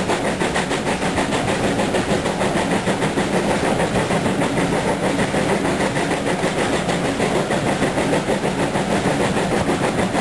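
A train running, a steady loud sound with a fast, even beat.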